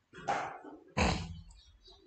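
A dog barking twice.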